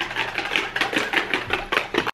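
Ice cubes rattling inside a stainless steel cocktail shaker being shaken by hand, a quick, even clatter that stops near the end.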